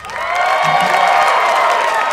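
Audience applauding and cheering at the end of a cabaret song, with a steady held tone sounding through the clapping.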